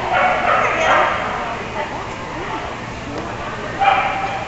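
A dog barking and yipping over a murmur of voices, with a burst of barks in the first second and another just before the end.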